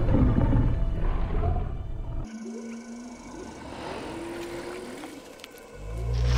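A deep, low Tyrannosaurus rex roar sound effect that fades over the first two seconds and breaks off suddenly. Soft background music with long held notes follows, and another deep rumble swells in just before the end.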